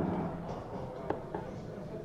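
A steel-tip dart landing in a Bull's Focus II bristle dartboard: one faint, brief click about halfway through, over steady low room noise.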